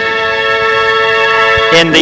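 Wind ensemble holding one long, steady note, then moving to lower notes near the end, with a brief low drum stroke as the harmony changes.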